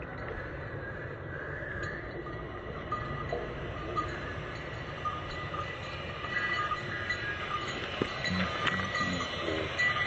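Approaching passenger train hauled by an electric locomotive, giving a steady low rumble along the track. Light intermittent metallic clinks of a bell hung on a buffalo's neck sound over it.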